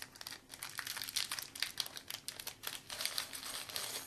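Small clear plastic bag crinkling as it is opened by hand to take out a metal ocarina neck chain, a dense irregular crackle that stops near the end.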